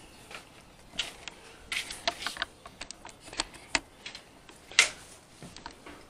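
Irregular light clicks, taps and rustles of a handheld camera being handled and turned, with one sharper knock near the end.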